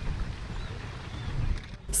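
Steady rushing noise of a boat under way across floodwater, with wind buffeting the microphone; it drops away just before the end.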